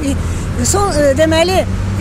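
A woman speaking in Azerbaijani over a steady low background rumble.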